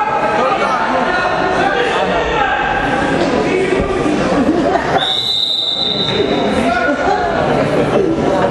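Many spectators' voices chattering in a large hall, and about five seconds in one long referee's whistle blast lasting nearly two seconds.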